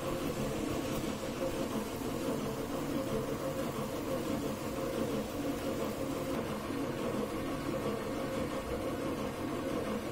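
A steady low mechanical hum with a faint even hiss and no separate clinks or knocks.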